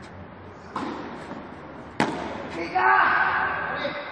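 Tennis ball struck by a racket: a fainter hit just under a second in, then one sharp crack of the near player's return about two seconds in. A man's voice follows right after.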